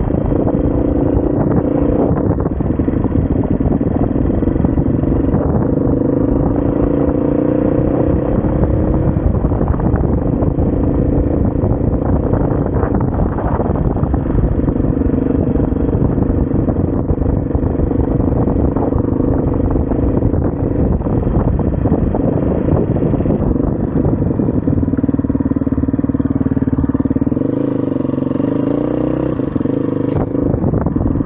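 SWM RS500R enduro motorcycle's single-cylinder four-stroke engine running under way, its note holding fairly steady with small rises and dips in revs, easing off a little around the ninth second and again near the end.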